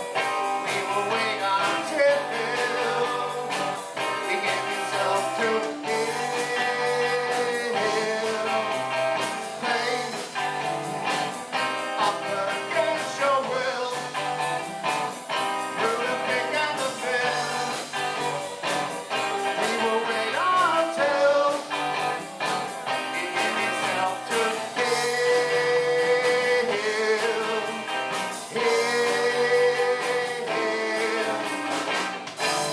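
Live rock band playing, with electric guitars and drums under a male lead vocal.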